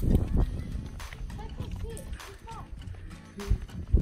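Footsteps of several people walking over sandstone rock, some in slapping thongs, with wind rumbling on the microphone and a few brief distant voices.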